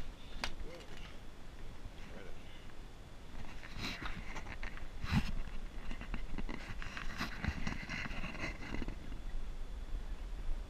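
A door handle clicks as a door is pushed open, then footsteps and scattered knocks and bumps as someone walks out across concrete.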